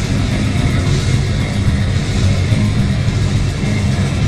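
Grindcore band playing live and loud: distorted electric guitar and bass over drums in a steady, unbroken wall of sound.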